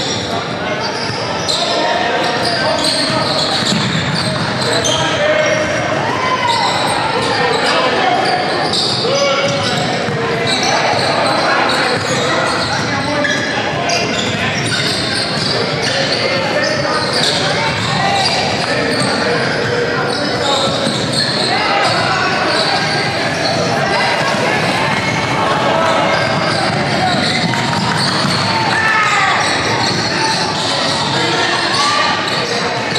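A basketball dribbling and bouncing on a hardwood gym floor during play, under a steady babble of players and spectators talking and calling out, echoing in a large gym.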